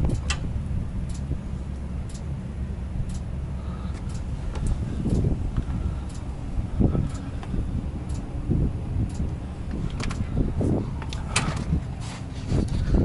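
Steady low diesel hum of a Volvo VNL860 semi truck running at idle, with a few scattered light clicks over it.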